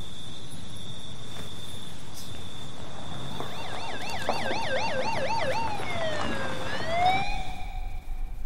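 Police siren starting a few seconds in with a fast up-and-down yelp, then slowing into a long falling and rising wail before cutting off near the end.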